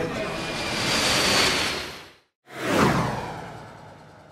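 Animation whoosh sound effects: a rushing noise swells for about two seconds and cuts off abruptly, then after a brief silence a second whoosh sweeps downward and fades out.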